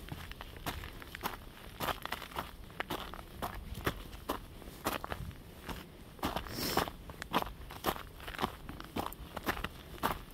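A hiker's footsteps on a mountain trail, a quick, steady walking pace of about two to three steps a second.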